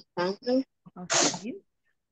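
A person's voice over a video call: a few short, unclear syllables, then one breathy, hissing syllable about a second in.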